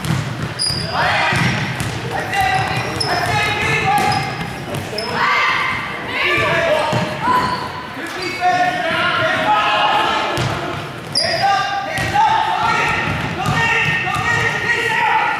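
A basketball bouncing on a hardwood gym floor during play, with voices shouting across the court, all echoing in a large gym.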